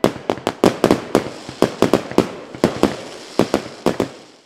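Fireworks going off: an irregular run of sharp bangs, about five a second, with crackling between them.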